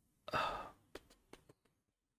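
A person sighs once, a short breathy exhale, followed by a few faint clicks.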